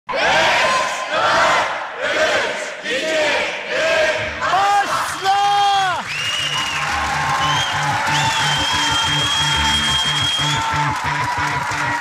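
Studio audience shouting and cheering for the first six seconds, with a drawn-out cry about five seconds in. After that, game-show background music with a steady beat takes over.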